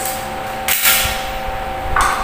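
A single short knock about three-quarters of a second in, over a steady background hum made of two thin tones.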